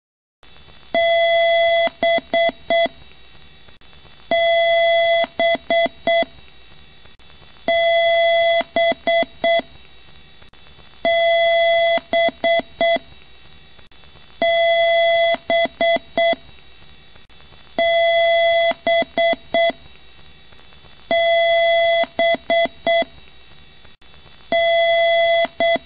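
A computer's beep pattern repeating about every three and a half seconds: one long, buzzy, mid-pitched beep followed by four short beeps of the same pitch, over a steady hiss. It starts suddenly about half a second in.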